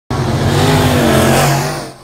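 Dirt-track race car engine running hard as the car comes down the straight, its pitch holding high with a slight rise, then falling and fading out near the end.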